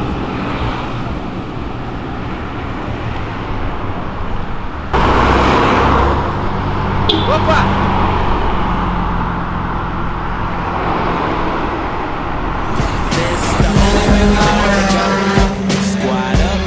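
Cars driving past on a street, engines running steadily under road noise, with a sudden louder passage about five seconds in. Music with singing comes in near the end.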